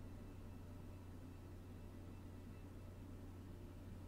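Near silence: room tone with a steady low hum and faint hiss.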